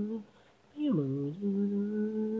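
A solo voice singing unaccompanied: a held note ends, there is a short pause for breath, then a note slides down and settles into a long steady held note.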